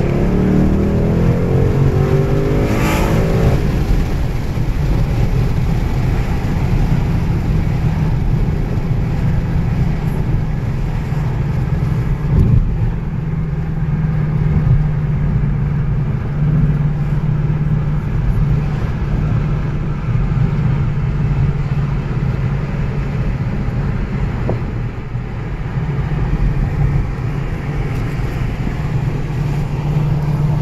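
A 2017 Ford Mustang's engine and road noise heard from inside the cabin. The engine note rises in pitch over the first few seconds as the car picks up speed, then settles into a steady drone while cruising.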